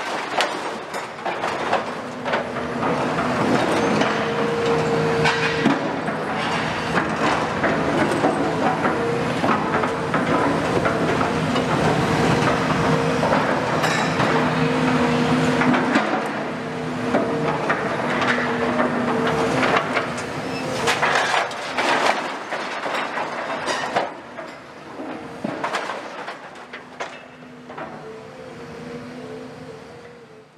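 Demolition excavators' diesel engines running steadily under load, with repeated metallic clanks, bangs and scraping of steel beams being cut and dragged into the scrap pile. The noise drops off noticeably in the last few seconds.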